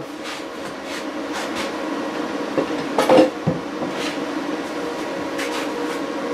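Steady electrical hum of solar inverters and a transformer running under load, with a few light knocks, the loudest about three seconds in.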